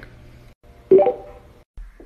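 A short electronic beep about a second in, fading quickly.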